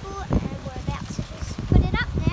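Indistinct voices outdoors, with a couple of short knocks and some chirps.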